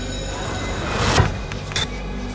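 A rushing whoosh over a low rumble, swelling to a peak just past a second in, with a shorter second whoosh near the end.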